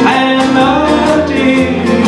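Live country band playing: a man singing over strummed acoustic guitar, with fiddle and a steady drum beat.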